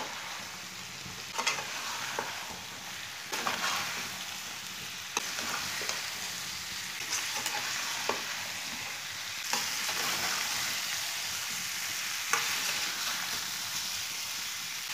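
Halved boiled potatoes being stirred into masala in a metal karahi, the metal spoon clicking against the pan now and then over a steady low sizzle of frying on low heat.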